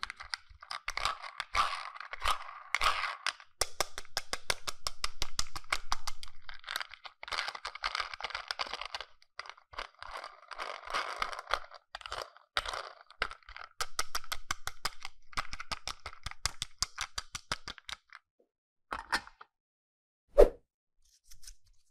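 Small plastic toy car handled and turned over in the hands: quick, uneven runs of small plastic clicks and scraping. The sound stops a couple of seconds before the end, with a short burst of clicks just after.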